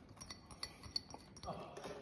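Faint light clinks and soft taps of sliced red onion being tipped from a small bowl into a large salad bowl, the bowls knocking lightly together.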